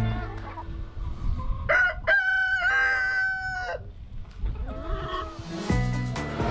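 A rooster crowing: one long call about two seconds in that holds its pitch and then drops off before four seconds. A fainter, shorter call follows near the end.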